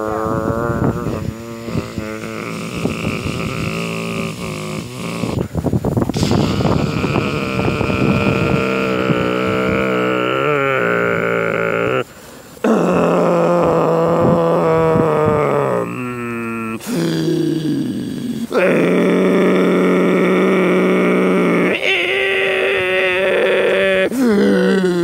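A person's loud, drawn-out groans and grunts: a string of long moaning notes, several held at one steady pitch for a few seconds, with brief breaks about halfway through and again a few seconds later.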